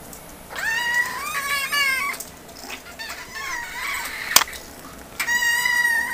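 Two young kittens meowing to be fed: a long rising meow about half a second in with overlapping calls after it, a few shorter, fainter meows in the middle, and another loud, steady meow starting near the end. A single sharp click comes a little past the middle.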